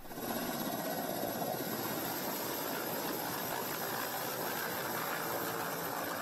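Helicopter engine and rotor noise, steady and even, starting abruptly, with a thin high whine running through it.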